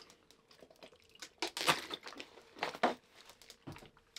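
Thin plastic water bottle crinkling and crackling in the hand as it is drunk from and handled, in a few short irregular crackles.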